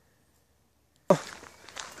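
Silence for about a second, then faint footsteps and camera handling on a woodland path start suddenly.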